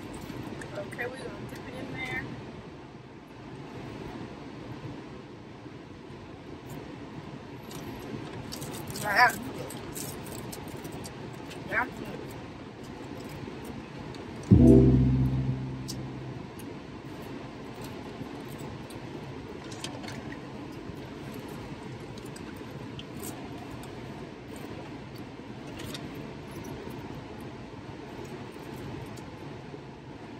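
Car air conditioner blowing steadily inside the cabin, with a few faint short sounds. About halfway through comes a loud low hum that starts suddenly and fades over a second or so.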